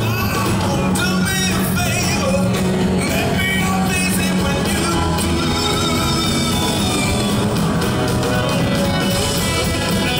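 Live blues-rock band playing: a male lead vocal over electric guitars, bass and drums, loud and unbroken.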